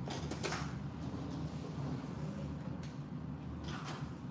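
Steady low hum of a tabletop nail dust collector's fan running, with a few faint clicks and rustles as metal and wooden cuticle tools are handled.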